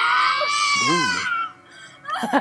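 A woman screaming in labor pain in a TV drama's birth scene: one long, high-pitched scream that cuts off about a second and a half in.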